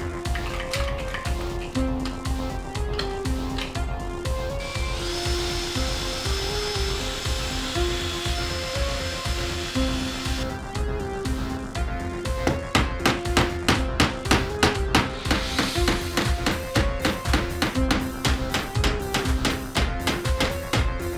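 Background music throughout. From about five seconds in, a cordless drill runs steadily for about six seconds, boring dowel holes through a wooden jig strip. From about twelve seconds in, a long run of quick hammer taps drives wooden dowel pins into the holes.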